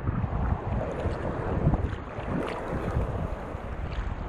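Choppy seawater sloshing and slapping against an action camera held at the surface, a low, uneven rush with wind on the microphone.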